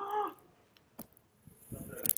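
A short wordless vocal sound from a person at a microphone, a brief hum or 'uh' with a bending pitch, then a single faint click about a second in.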